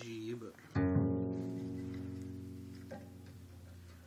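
A double bass string, the newly fitted D string, plucked once about a second in, ringing with a deep pitched tone that slowly dies away over about three seconds. A short murmur of voice comes just before the pluck.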